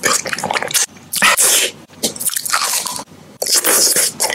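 Close-miked wet mouth sounds of eating: sucking and licking on a hard lollipop, then biting into a soft block of food. The sounds come in loud bursts with brief gaps about one, two and three seconds in.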